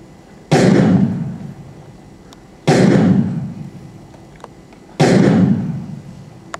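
Three loud booming hits, evenly spaced about two and a quarter seconds apart, each starting abruptly and dying away over about a second.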